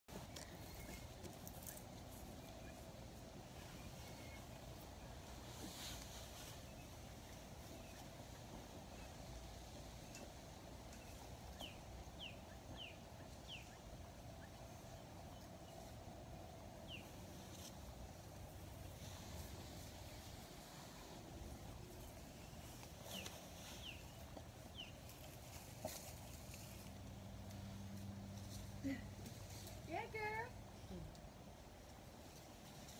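Faint, quiet outdoor ambience with a few short, high downward chirps in two small groups of three, about twelve and twenty-four seconds in, and a brief voice near the end.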